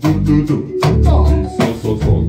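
Live band music with guitar and bass guitar, driven by strong beats that land about every three-quarters of a second.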